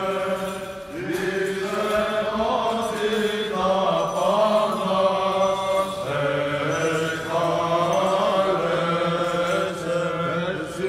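Male voices singing Byzantine chant of the Greek Orthodox church: a slow melody over a held low drone note, which shifts lower about six seconds in.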